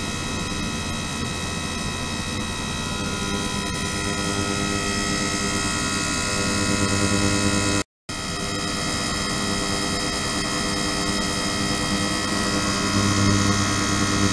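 Ultrasonic cleaning tank running with its small liquid-circulation pump: a steady hum made of many fixed tones from low to very high over a faint hiss, swelling slightly now and then. It drops out for a split second about eight seconds in.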